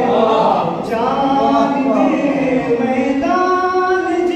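A man singing a devotional Urdu poem unaccompanied into a microphone, in a melodic recitation style with long held notes; the last held note starts just over three seconds in.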